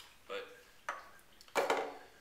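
Hard plastic hunting calls being handled and set down on a wooden tabletop: a light click about a second in, then a louder clatter just before the end.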